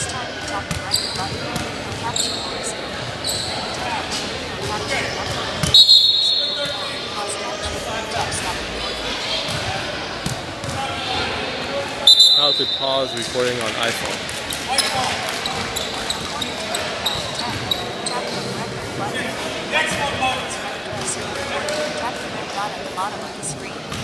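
A basketball bouncing on a hardwood gym floor amid gym chatter, with two loud, short, high whistle blasts about six seconds apart.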